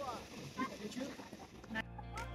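Faint, distant voices with short, bending pitches. Background music cuts back in near the end.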